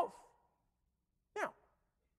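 A single short vocal sound from the man at the lectern, a voiced breath or "hm" that falls steeply in pitch, about one and a half seconds in. It comes after the tail of his last spoken word, with near silence around it.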